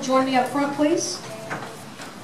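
A person's voice speaking briefly in the room, then a single short knock about one and a half seconds in.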